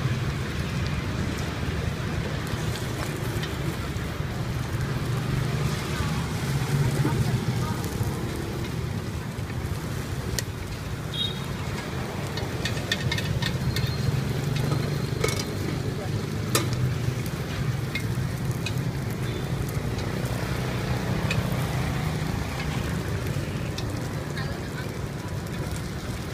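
Street-side cooking ambience: a wood fire burning under dimpled cast-iron cake pans over a steady low rumble, with scattered sharp clicks and crackles from about ten seconds in.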